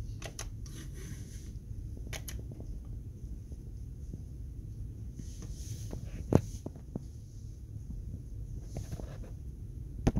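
Steady low hum of running computer equipment, with a few sharp clicks scattered through it; the loudest single click comes about six seconds in.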